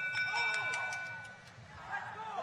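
Match-control end-of-period signal marking the end of the autonomous period: a bell-like chord of several steady pitches that cuts off a little over a second in, over faint crowd chatter.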